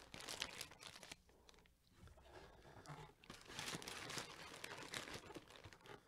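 Faint crinkling and light knocks of cardboard packaging being handled as the box is lifted and moved, in irregular spells with a brief lull in the middle.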